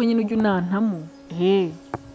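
A woman speaking in short phrases into a headset microphone, with a brief drawn-out vocal sound near the end. A faint steady hum runs underneath.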